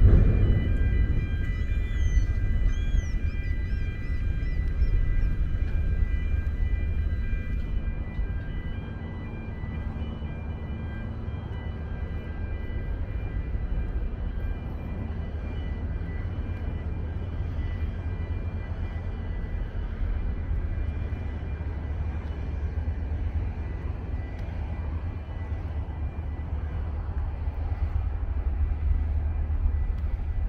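Wind rumbling on the camera's microphone on an exposed bridge, a low, fluctuating noise, with a faint steady high hum through roughly the first third.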